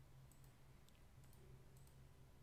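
Near silence with a few faint computer mouse clicks, over a low steady hum of room tone.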